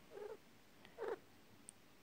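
Coturnix quail giving two soft, short calls about a second apart, each falling in pitch.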